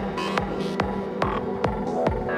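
Electronic music track built from Music Maker JAM loops: a steady kick-drum beat a little over two hits a second, each kick dropping in pitch, over sustained synth tones.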